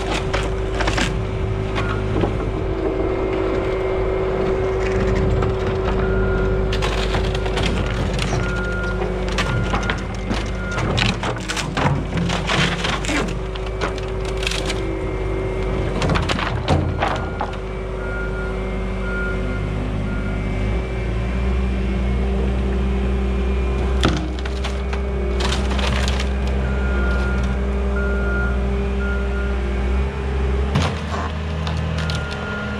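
Bobcat skid-steer loader's diesel engine running under load while its bucket pushes down an old wooden board fence, with several bursts of boards cracking and splintering. Short runs of its backup alarm beeping come three times.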